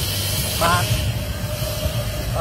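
Steady low idle of a Lexus NX200t's 2.0-litre turbocharged four-cylinder engine, with a thin steady hum above it. A brief spoken word cuts in about half a second in.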